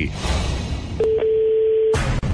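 A brief rush of noise, then a single steady telephone tone lasting about a second, heard down the line as a call rings out before it is answered.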